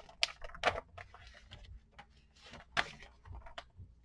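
Picture book being handled as its page is turned: a few soft, sharp clicks and rustles of paper, the strongest near the start and a little before three seconds in, over faint room hum.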